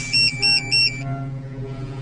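Phone ringing: an electronic ringtone trilling in quick high pulses, cutting off about a second in as the call is picked up. A low steady drone of tones continues underneath.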